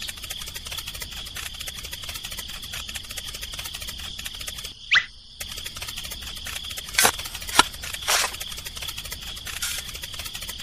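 Cartoon sound effects: a steady high-pitched chirring with fast ticking, a quick rising whistle about halfway through, and a few sharp pops in the last few seconds.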